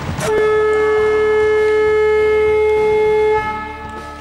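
Sports-hall horn sounding one long, steady tone for about three seconds, the signal for the end of the match.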